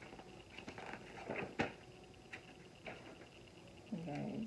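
Hands handling small objects on a table: a few light clicks and brief rustles, with one sharper click about one and a half seconds in.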